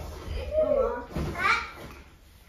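A young girl's voice making two short sounds, the second an 'ah'.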